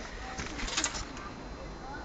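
A pigeon cooing in the background, with a few short clicks just before the one-second mark.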